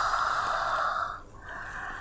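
A woman breathing out long and audibly through her open mouth, a breathy sigh that fades out a little over a second in, followed by a softer breath.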